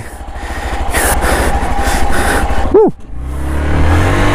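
Single-cylinder engine of a Hero XPulse 200 motorcycle running with a rapid low pulsing. There is a brief rising-and-falling tone a little under three seconds in, and then the engine pulls steadily under way with its pitch creeping up.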